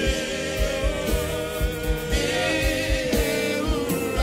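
Pentecostal gospel worship song: voices singing together, choir-like, over a band with a steady low drum beat about three strokes a second.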